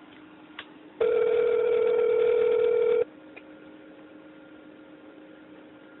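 Telephone ringback tone heard over the phone line: a single steady ring tone about two seconds long, starting about a second in, as the call is put through to a live agent after pressing one.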